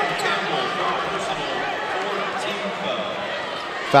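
Gymnasium ambience at a high school basketball game: a murmur of many voices from the crowd and players carrying around the hall, with a few faint ball bounces.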